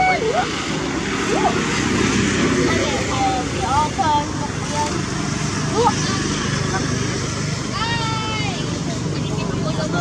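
Macaque calls: several short cries that slide up and down in pitch, and one longer arching cry about eight seconds in, over a steady low rumble.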